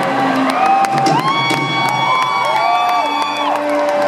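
Live band music under a concert crowd cheering, with several overlapping long whoops from about a second in until near the end.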